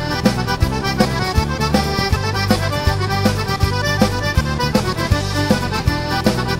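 Instrumental music with a steady beat and a bright lead melody, without vocals.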